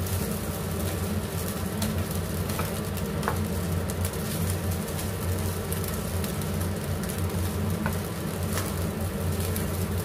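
Fried rice sizzling in a frying pan as a spatula stirs and turns it, with a few light scrapes of the spatula against the pan. A steady low hum runs underneath.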